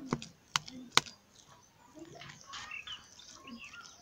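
Metal spoon clicking against a ceramic bowl while stirring thick grain porridge: three sharp clicks in the first second, then quieter faint sounds.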